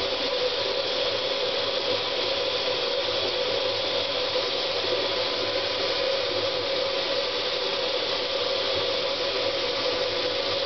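A steady hiss with a constant hum underneath, unchanging throughout.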